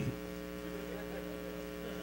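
Steady electrical mains hum, several constant tones with no change through the pause.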